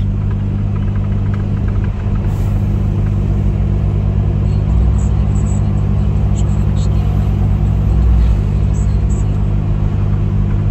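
Heavy truck's diesel engine running steadily under way, heard inside the cab as a low drone with road noise; the low end swells briefly twice, about halfway through and again near the end.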